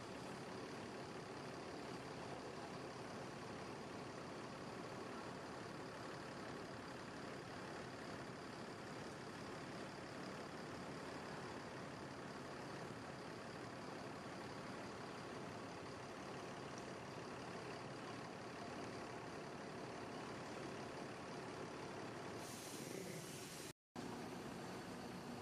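Steady noise of idling diesel coach engines, with no single sound standing out.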